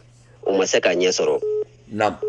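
A man's voice over a telephone line, followed about a second and a half in by a short, steady beep on the line, with a steady low hum underneath.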